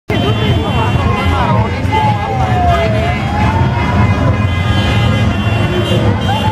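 Caravan cars passing slowly through a crowd amid voices and general street noise, with a siren-like tone that falls and then rises again about two to three seconds in.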